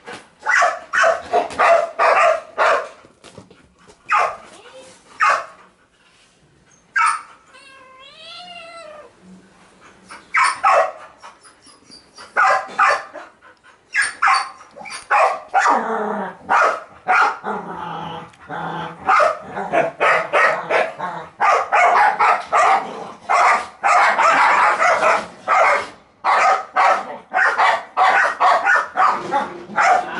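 A dog barking over and over in quick bursts, with a drawn-out, wavering cry about eight seconds in.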